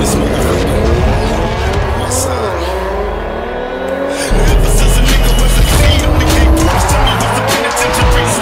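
Rap remix with a bass beat, mixed with a car engine revving and tyres squealing; the bass gets much heavier about four seconds in.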